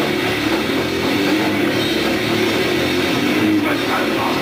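A grindcore band playing live at a steady loud level, with distorted guitars over a drum kit, heard from among the crowd.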